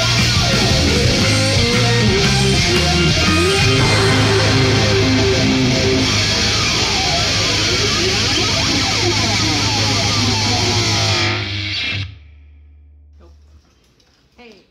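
A heavy rock band plays: distorted electric guitars, bass guitar and drums. The song stops abruptly about twelve seconds in, and a faint low hum carries on briefly after it.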